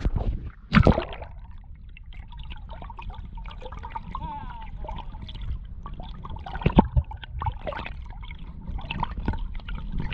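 Hand-held action camera plunged into the sea: a splash just under a second in, then the muffled underwater sound of water moving around the camera, with scattered knocks and bubbling.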